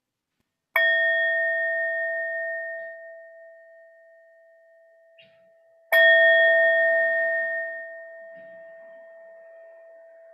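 A meditation singing bowl (standing bell) struck twice, about five seconds apart, the second strike louder; each stroke rings with a clear two-note tone that slowly fades. The bell marks the close of the silent meditation period.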